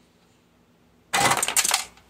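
A brief clattering rattle of rapid clicks, about three-quarters of a second long and starting a little over a second in, as the recoil starter is lifted and pops off a Briggs & Stratton Quantum mower engine.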